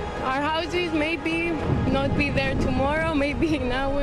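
A woman speaking in a distressed voice over background music.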